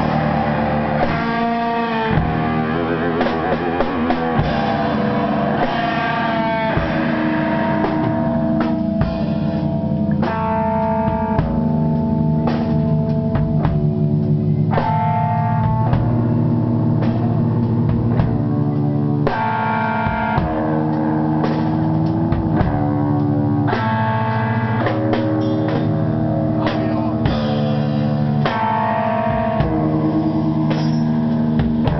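A live loud rock band playing: held guitar chords that change every second or so, with drum kit hits running through.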